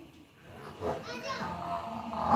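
Voices, children among them, talking and calling out, growing louder after about half a second.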